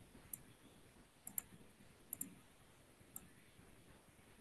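Faint, sharp computer mouse clicks over near silence: a single click, then two quick double-clicks, then one more click.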